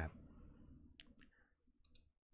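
A few faint computer mouse clicks, a pair about a second in and another pair near the end, against near silence.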